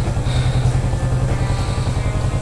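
Kawasaki Vulcan S 650's parallel-twin engine idling steadily with an even low pulse, the bike standing still.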